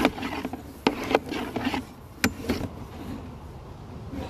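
Sewer inspection camera's push cable being fed quickly down a cast iron vent stack, scraping and rubbing, with a few sharp knocks. The noise dies down in the last second or so.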